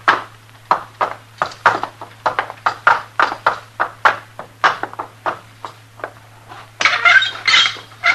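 Hoofbeats of a horse led at a walk, as a radio sound effect: uneven single clops, about two to three a second. A brief rougher, noisier sound comes about seven seconds in.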